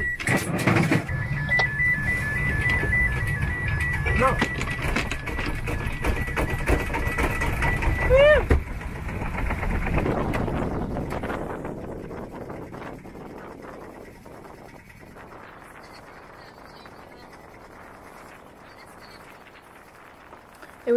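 A sailboat's small inboard engine being crank-started in the cabin and rumbling, with a steady high-pitched alarm beep sounding over it. About ten seconds in this gives way to a quieter wash of wind and waves.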